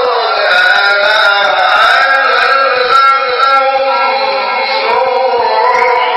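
A man's solo Qur'an recitation in the melodic style, sung through a microphone. He holds long, ornamented phrases that bend slowly up and down in pitch.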